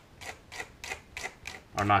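Hobby knife scraping shavings off a clear plastic sprue in short, even strokes, about three a second.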